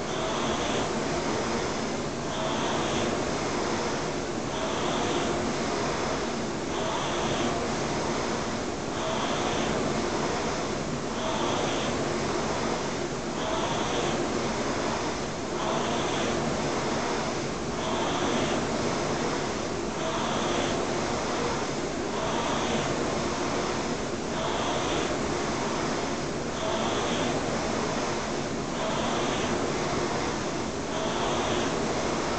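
Concept2 rowing machine's air-resistance fan flywheel whirring steadily, surging with each stroke about every two seconds, roughly 27 strokes a minute.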